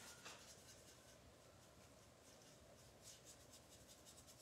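Faint scratchy strokes of a small paintbrush scrubbing paint into a wooden cutout, barely above room tone.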